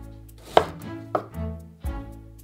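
A knife cutting through a lime onto a wooden cutting board: two sharp chops about half a second apart.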